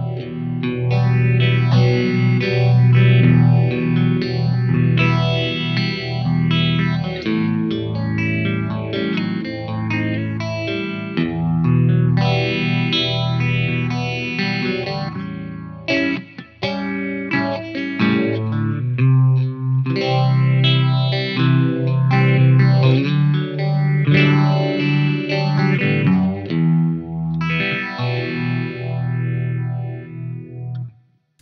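Electric guitar, a Fender Telecaster, playing an overdriven rock riff through an MXR Phase 90 phaser into a valve amp and miked 2x12 cabinet. The chords carry a slow, swirling phase sweep.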